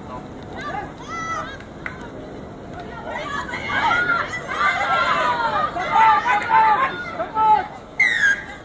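Many high voices shouting and calling out together, building from about three seconds in and loudest just before the tackle near the end.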